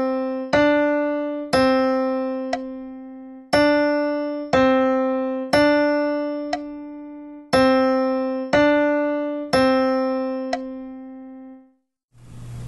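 Piano playing a slow two-note melody on C and D in 2/4 time as a melodic dictation exercise. It goes two one-beat notes, then a two-beat note, and this pattern repeats three times at about one note a second, each note fading after it is struck.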